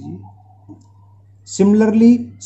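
A voice speaking Hindi, pausing for about a second and a half in which a pen is heard writing on paper, with a steady low hum underneath; the speech resumes near the end.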